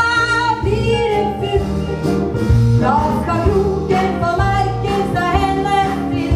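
A song from a stage musical: a voice singing a melody over instrumental accompaniment with a bass line.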